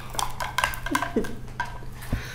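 Beaded necklace clinking as it is handled: a quick run of small, sharp clicks with brief ringing, and a couple of short hums from the woman in the middle.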